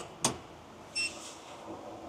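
A click, then about a second in one short high beep from the EG4 6000XP hybrid inverter as it powers on.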